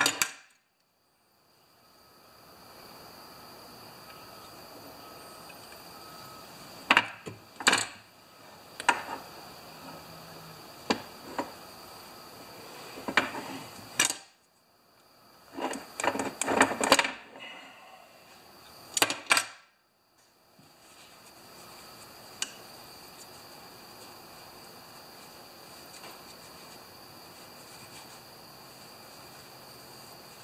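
Pliers and small metal carburetor parts clicking and knocking on a steel workbench in scattered bursts, from several seconds in until about two-thirds through, while the loose fuel inlet fitting is worked on. A steady hum runs underneath.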